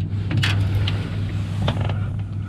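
Steady low hum of an electric trolling motor pushing the canoe, with a few light clicks and knocks as the broken fishing-rod pieces are handled against the aluminium hull.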